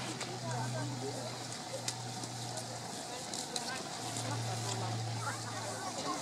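A large flock of bramblings passing overhead: a dense, continuous chatter of many overlapping calls, over a steady low hum.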